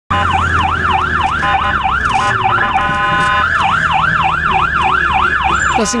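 Ambulance siren in its fast yelp mode, sweeping up and down about three to four times a second, heard from inside the ambulance over the low rumble of its engine. Near the middle the sweeping stops for about half a second and gives way to a steady held tone, then the yelp resumes.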